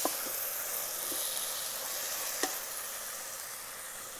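Chopped tomatoes and onions sizzling in hot oil in an Instant Pot's stainless steel inner pot on sauté mode, stirred with a wooden spoon that knocks against the pot a few times. The sizzle eases slightly toward the end.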